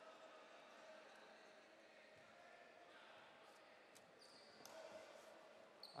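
Near silence: faint, steady ambience of an indoor sports hall.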